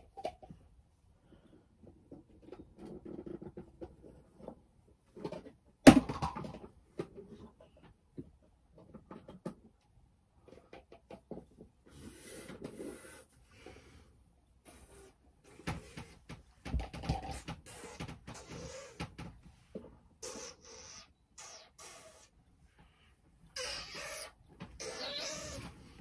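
Irregular handling noises: scattered clicks and knocks, with a sharp knock about six seconds in, and short bursts of rustling, as objects are moved about close by.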